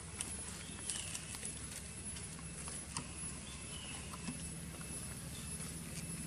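Outdoor ambience: a steady low hum with scattered light clicks and ticks, and two short high chirps, one about a second in and one midway.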